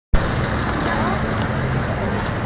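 Busy city street noise: a steady hum of traffic mixed with the voices of a crowd on foot.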